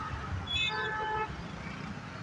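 A vehicle horn sounds once, a single honk of under a second about half a second in, over steady street and crowd noise.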